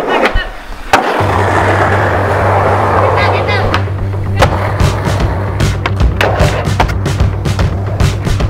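Skateboard wheels rolling on pavement, with a sharp clack about a second in, then rolling again until the board goes airborne and a loud clack of it landing shortly after four seconds in. Music with a low steady bass comes in after the first clack and runs under the rolling and later clicks.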